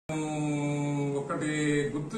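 A man's voice holding one long, steady note, then moving to a second held note a little over a second in, in a chant-like drawl.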